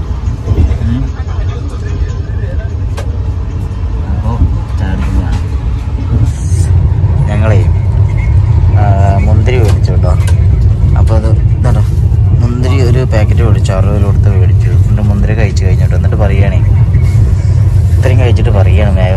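A moving passenger train heard from inside a sleeper coach: a steady low rumble that grows louder about six seconds in, with voices talking over it.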